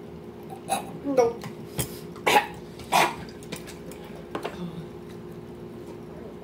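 A string of short, sharp coughs and gasping breaths, most of them in the first three seconds. These are people reacting to the burn of a death nut, a peanut coated in extremely hot chili extract.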